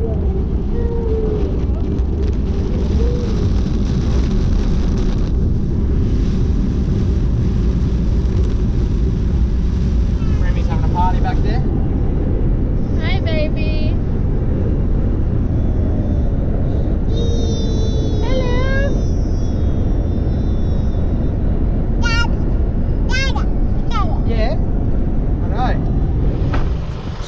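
Steady road and tyre noise inside a moving car's cabin on a wet dirt road, with a hiss of rain on the windscreen that stops suddenly about eleven seconds in. In the second half a baby gives several short high-pitched squeals and babbles.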